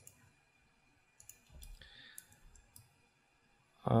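Several faint, scattered clicks from a computer mouse and keyboard over quiet room noise.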